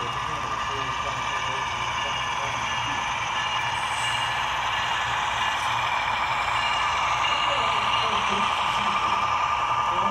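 HO-scale model diesel locomotives passing, their ESU LokSound sound decoders playing a steady diesel engine drone for a GE ET44AC and an EMD SD70MAC, growing slightly louder.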